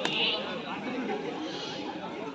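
Chatter of many spectators' voices overlapping, with a sharp click right at the start.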